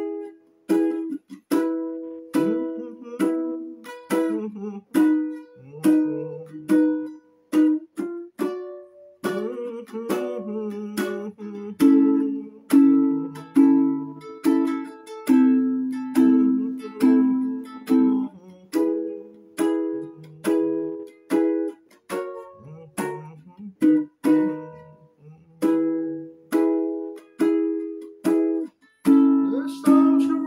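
Solo ukulele strumming chords in a steady rhythm, each strum ringing and fading before the next, during an instrumental break with no singing.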